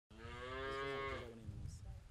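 A cow mooing: one long, low call lasting about a second that drops in pitch as it ends.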